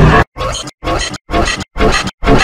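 Heavily distorted, effect-processed audio clip chopped into a stutter of short, abruptly cut bursts, about five in two seconds, rough and noisy with a low pitched undertone.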